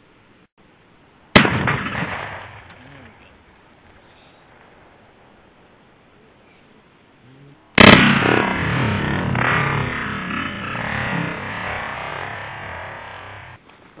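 Two .22-250 rifle shots from a Savage Model 110, each a sharp crack, about six and a half seconds apart. The first dies away within about a second; the second is followed by about six seconds of continuing noise.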